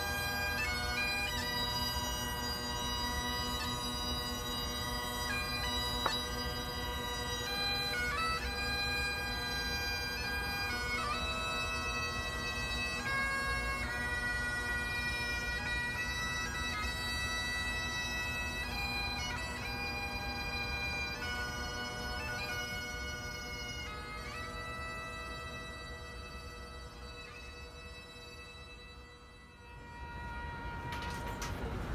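Solo bagpipes playing a slow melody over steady drones, fading away over the last few seconds.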